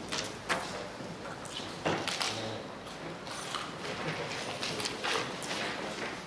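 A few irregular sharp knocks and shuffles of people moving about the room and handling things at a table, over steady room noise.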